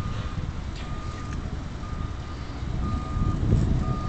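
A backup alarm beeping about once a second, one steady tone per beep, over a low rumble that grows louder near the end.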